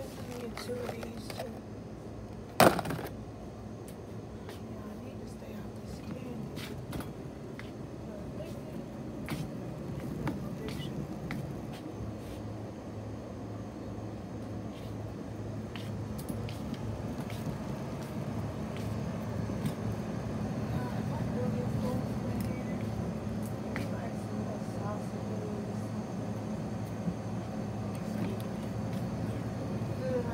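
Wire shopping cart rolling across a store floor with a low rumble that builds through the second half, with voices in the background. A single sharp knock about two and a half seconds in is the loudest sound.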